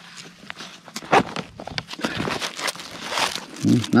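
Hands working a backpack: a nylon strap pulled through its plastic buckle, then rummaging in the pack's pocket, with scattered clicks and scrapes and a longer rustle of fabric and plastic wrapping in the second half.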